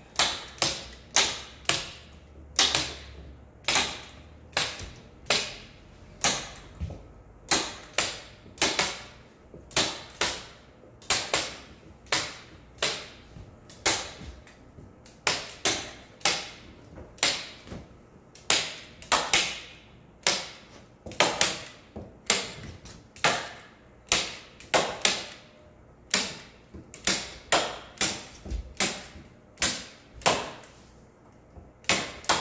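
Hand staple guns snapping staples into the wooden edges of a frame to fasten a sheet of hanji paper, two tools working at once. The sharp clicks come irregularly, about one or two a second, some close together.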